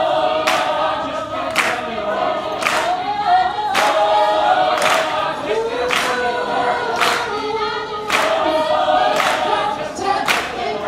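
Gospel choir singing, with a sharp clap-like hit on the beat about once a second.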